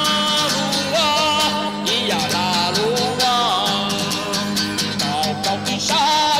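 A man singing loudly in a wavering melody while strumming an acoustic guitar.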